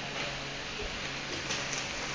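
Room tone: a steady low hiss with a faint constant hum, and no distinct events.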